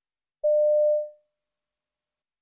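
A single steady electronic beep, about half a second long, that fades away at the end. It is the tone that marks the start of each recorded extract in a listening test.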